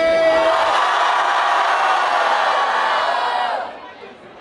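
Crowd of young spectators cheering and screaming at full voice, a vote by noise for the first rap duo. A man's drawn-out shout opens it, and the cheering dies away about three and a half seconds in.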